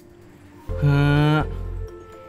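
A man's drawn-out, low 'yeah' (Thai 'เออ'), held for about a second at a steady pitch and trailing off, over soft background music.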